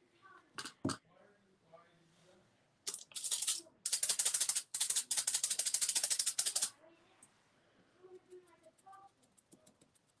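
A fast, even rattle of something shaken by hand, lasting about four seconds from about three seconds in, with a few light taps before and after.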